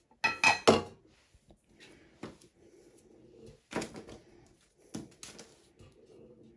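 Metal tea tin and its lid being handled on a wooden table. A quick cluster of clinks and knocks comes in the first second, then a few separate knocks.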